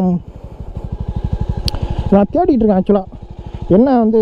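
Jawa 300's single-cylinder engine idling with an even, rapid thump from the exhaust, growing louder over the first two seconds. A single sharp click sounds about a second and a half in.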